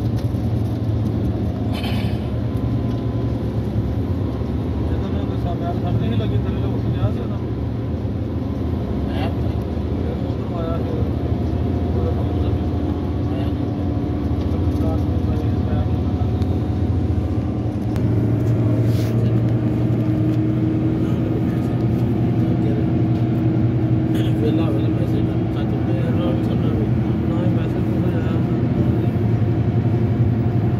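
Inside a moving car's cabin at highway speed: a steady low rumble of engine and tyre noise, a little louder in the last third.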